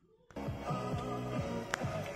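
Music from an FM radio station coming on through the car stereo, an aftermarket Android head unit that has just finished starting up, about a third of a second in.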